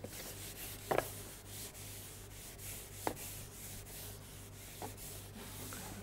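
Felt blackboard duster rubbing across a chalkboard in repeated quick strokes, wiping the chalk off. A few short faint sounds break in about a second in and near three seconds.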